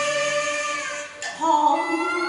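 A woman singing a Cantonese opera aria into a microphone over instrumental accompaniment. A long held note fades out about a second in, and after a brief gap she starts a new phrase on a lower note.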